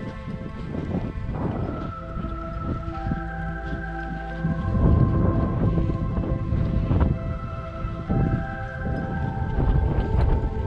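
Background music with long held notes that shift every second or two, over gusts of wind buffeting the microphone.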